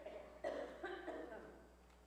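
A person coughing several times in quick succession, faintly.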